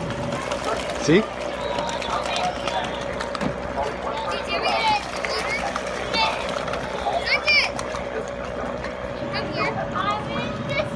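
Outdoor crowd ambience: distant children's voices calling and shouting now and then, over a steady faint hum.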